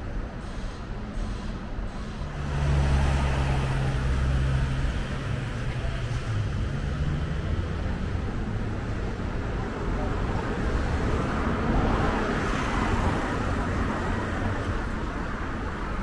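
City street traffic: cars driving past on the road. A low engine drone is loudest from about two and a half to seven seconds in, and another vehicle swells past around twelve seconds.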